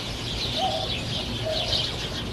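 A flock of small birds chirping steadily in the trees, a dense high-pitched chatter with no break.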